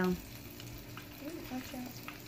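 A bluegill frying in a skillet of hot oil, a steady sizzle with scattered small crackles.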